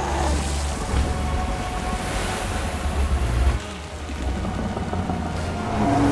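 TV series soundtrack: dramatic music over a deep rumble and the rush of churning water as a giant water-spirit creature surges up. The heavy low rumble eases about three and a half seconds in.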